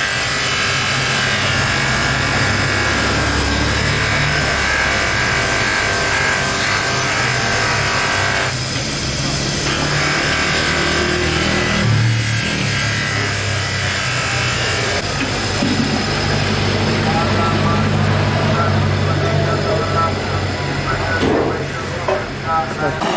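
Electric bench buffing motor running steadily as a plastic tail light lens is pressed against its spinning cloth polishing wheel, the lens rubbing on the wheel with brief eases in pressure along the way.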